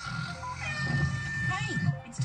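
Radio adverts playing through the motorhome's Pioneer stereo: a jingle-like stretch of music and voice-like sounds between spoken ads, with a high steady tone held for about a second in the second half.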